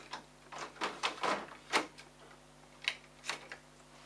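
Plastic toner cartridges being slid back into a colour laser printer's toner bay, giving a series of sharp plastic clicks and knocks at uneven spacing.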